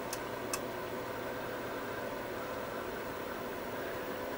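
Steady low hum and hiss of background room noise, with two faint clicks within the first half second.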